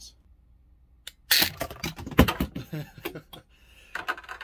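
Grapnel launcher replica firing its hook with a sudden sharp snap about a second in, followed by a quick run of clattering knocks as the hook strikes a vinyl Funko Pop figure and knocks it off its turntable.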